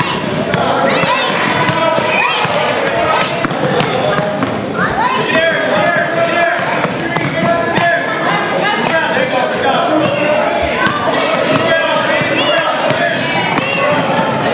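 Basketball dribbling on a hardwood gym floor amid the running play of a youth game, with children's and spectators' voices calling out throughout, echoing in the gym.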